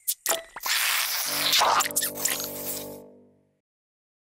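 Cartoon sound effects: a few quick squishy hits, then a short noisy rush, under a held closing music chord that fades out about three and a half seconds in.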